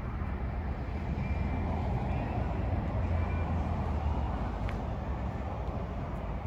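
Steady low outdoor background rumble, with a faint click about three-quarters of the way in.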